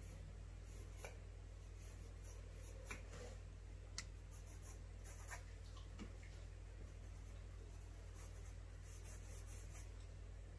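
Graphite pencil scratching lightly on sketchbook paper in short, repeated sketching strokes, with a few faint ticks in between.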